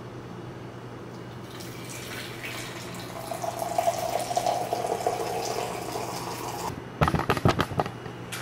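Coffee poured from a French press into a mug: a steady splashing stream with a held ringing note in the mug for about four seconds, stopping just before the end. Then a quick run of sharp knocks, the loudest sound.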